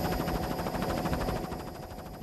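Helicopter hovering close by: a fast, even rotor chop with a steady high turbine whine over it, fading out near the end.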